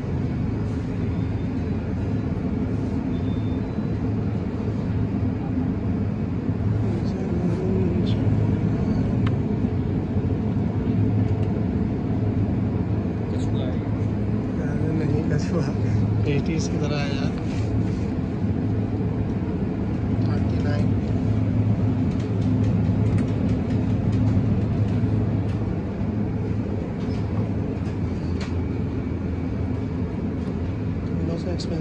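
Steady low hum of a convenience store interior beside refrigerated display cases, with faint voices in the background. Brief rustles and clicks come in the middle as a clear plastic food container is handled.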